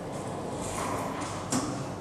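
Semiautomatic film laminating machine running with a steady mechanical noise, and one sharp click about one and a half seconds in.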